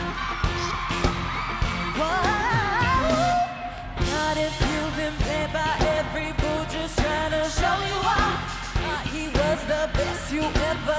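Live pop music: a female vocal group singing over a band with drums and a steady beat. A wavering, run-like vocal line comes about two seconds in, followed by held sung notes.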